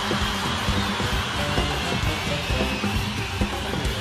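Live concert sound: the band's music, with a bass line, plays on under the steady noise of a large crowd cheering.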